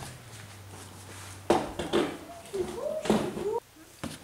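Plastic truck door trim panel being handled and moved away from the door: a few sharp knocks and scrapes, starting about a second and a half in.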